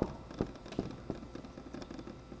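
Faint taps and scratches of a dry-erase marker writing on a whiteboard: a few light, irregular clicks over a quiet room.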